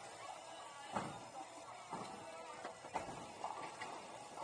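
Bowling alley din: three knocks about a second apart, the first the loudest, from balls and pins on the lanes, over a low murmur of voices.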